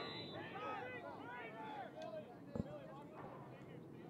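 Faint, scattered shouts of lacrosse players and coaches calling across the field, with a single sharp knock about two and a half seconds in.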